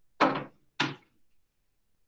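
Two loud thumps about half a second apart, the first slightly the louder, each sudden and dying away quickly.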